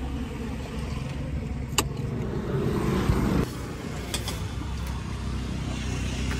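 A car's low engine and road rumble heard from inside the cabin, with a sharp click about two seconds in. About three and a half seconds in the sound changes abruptly to a quieter, steady outdoor hum.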